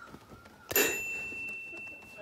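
A single bright bell-like ding about three-quarters of a second in, its high tone ringing on and slowly fading.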